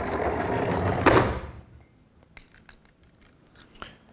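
Radio-controlled toy car's electric motor and wheels running along a tabletop, ending in a thump about a second in as the car is caught by hand and stopped. A few faint clicks follow.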